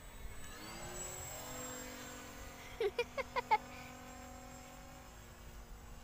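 Motor and propeller of an RC motor glider droning overhead in flight, rising in pitch for the first second and then holding steady. About halfway through come four short, loud calls in quick succession.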